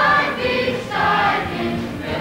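A stage chorus singing a song over its accompaniment, in held notes that change every half second or so.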